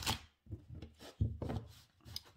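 Tarot cards being handled: a rustle of cards, then a few soft knocks on the table at about a second in.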